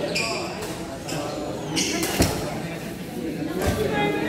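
Voices chattering and echoing in a large sports hall, with sharp smacks of badminton rackets striking a shuttlecock: the loudest about two seconds in, another near the end.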